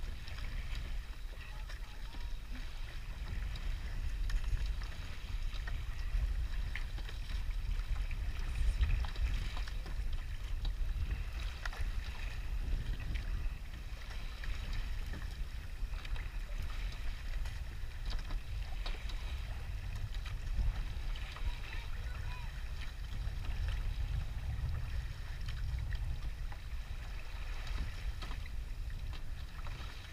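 Rowing shell under way: a steady, uneven rumble of wind on the boat-mounted microphone over the wash of water along the hull, with occasional light knocks from the oars working in their oarlocks.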